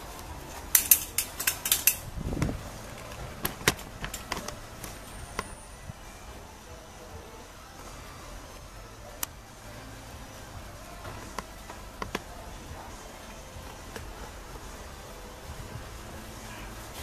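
Handling noise: a quick cluster of sharp clicks and knocks in the first two seconds, one dull thump just after, then a few scattered clicks over a steady low background noise.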